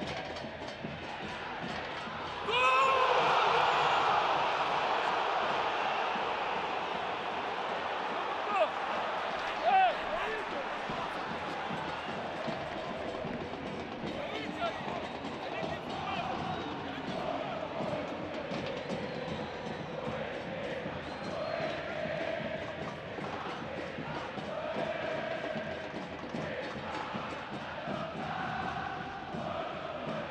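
Football stadium crowd erupting in cheers about two and a half seconds in as a goal is scored, with two short loud shouts near ten seconds in. The cheering then eases into a lower, steady crowd din with voices through it.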